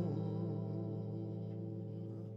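The last chord of a song on hollow-body electric guitar and backing, held and slowly fading away.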